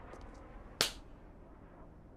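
A single sharp crack, like a bang or snap, a little under a second in, over low background sound.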